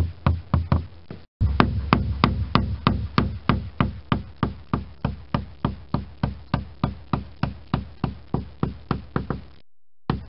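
Caulking mallet striking a caulking iron in a steady rhythm of about three blows a second, driving caulking into the seams between the pine planks of a wooden boat hull. The blows break off briefly twice, once about a second in and once near the end.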